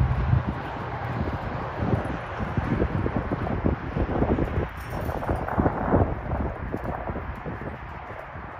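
Wind buffeting the microphone over the muffled, uneven hoofbeats of a horse moving through deep sand.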